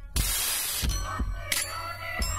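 Hip-hop instrumental beat played from a vinyl record: deep bass and kick drum, with a loud burst of hiss-like noise lasting over half a second near the start, then a wavering melodic line over the beat.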